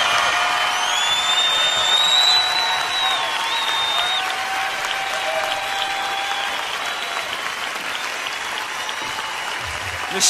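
Live concert audience applauding after a song ends, with a few whistles in the first few seconds, the applause slowly dying down.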